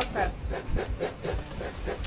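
Repeated scraping or rasping strokes, about four a second.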